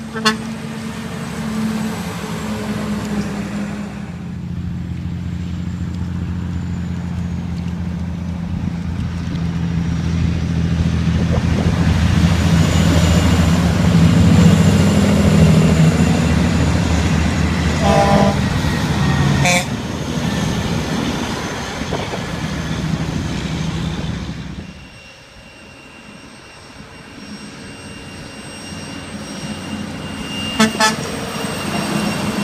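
Big rigs passing close by, the diesel engine and tyre noise building to a loud pass and fading away near the end. Short blasts of a truck horn come at the very start and again about two-thirds of the way through.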